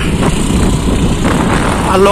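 Motorcycle running steadily while being ridden, its low rumble mixed with wind rushing over the microphone.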